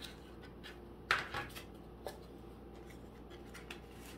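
Soft handling sounds of paper envelopes and a cardstock tag being picked up and set down on a cutting mat: a few light taps and rustles, the loudest about a second in.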